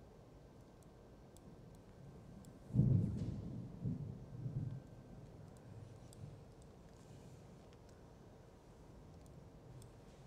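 A thunder clap: a sudden deep rumble about three seconds in that rolls through a couple of further swells and dies away over about three seconds.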